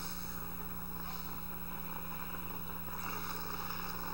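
Steady background hum and hiss from an old recording, with no distinct sound standing out.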